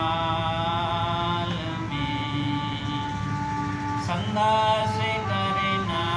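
Harmonium playing a devotional melody of held notes that change step by step over a steady low drone.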